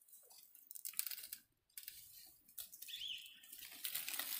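Palm fronds rustling and crackling in irregular bursts as a hand pushes through and handles them, with a short bird chirp about three seconds in.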